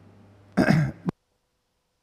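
A man clears his throat once, briefly, about half a second in.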